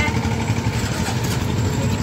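Steady low rumble of motor-vehicle engines and street traffic.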